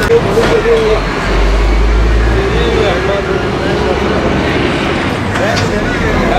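Roadside traffic, with a heavy road vehicle passing: a low rumble that is loudest from about one to three seconds in. People talk underneath it.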